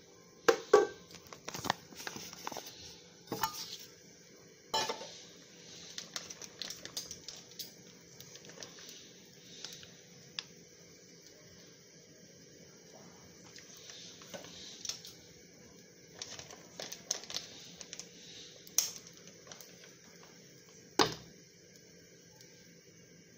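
Kitchen clatter of metal pots and utensils: a run of knocks and clinks, busiest in the first few seconds, then scattered, with two sharp knocks near the end, over a faint steady hiss.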